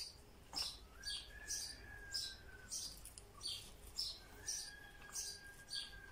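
Close-up chewing of a crisp toasted sandwich: a steady rhythm of short crunchy mouth sounds, about two to three a second. A faint thin steady whistle sounds twice behind it, each lasting about two seconds.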